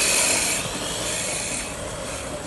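An electric RC drift car's hard plastic tyres scrubbing across a polished terrazzo floor as the car slides sideways, a rasping hiss. It is loudest in the first half-second, then dies down.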